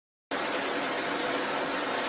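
Sound effect of a fire hose spraying water: a steady, loud hiss that cuts in suddenly about a third of a second in, after dead silence.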